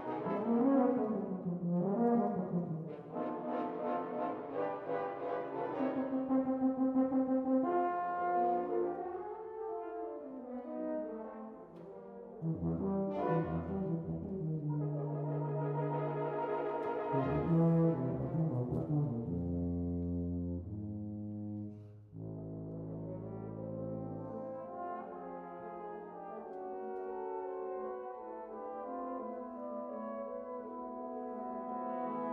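Solo tuba with an ensemble of nine French horns playing a classical work. Sustained low tuba notes sit under the horns through the middle, the music drops off suddenly about two-thirds of the way through, and a softer horn passage follows.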